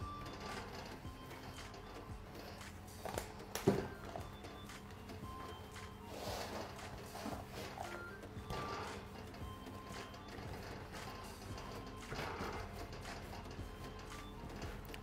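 Faint background music, with soft knocks and rustles of soft pretzel dough being lifted, dropped and kneaded on a silicone mat over a steel worktop; the sharpest knock comes about four seconds in.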